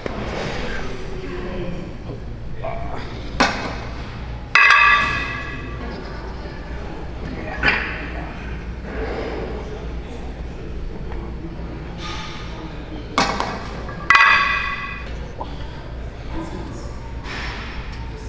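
Steel weight plates being loaded onto a barbell: several sharp metal clanks, two of which ring on for about a second.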